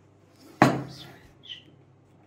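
A small drinking glass set down sharply on a table, one loud knock about half a second in that trails off, followed by a smaller, higher clink a second later.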